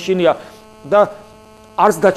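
A man speaking in short, broken phrases with pauses, over a steady electrical hum that is heard in the gaps.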